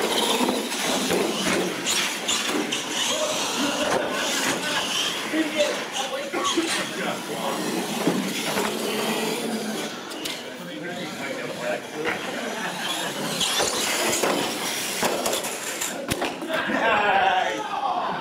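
Radio-controlled monster trucks racing, their motors and tires running under the steady chatter of people in a large hall.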